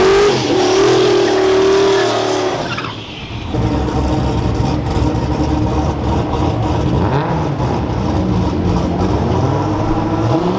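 Turbocharged 5.3-litre LS V8 (LC9) in a drag-raced AMX Javelin held at high revs during a burnout, with the rear street tyres spinning. About three seconds in it comes off the throttle and settles into a loud, pulsing idle as the car rolls forward to stage.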